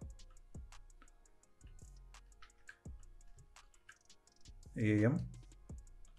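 Computer keyboard typing: separate key clicks at an uneven pace, about two a second.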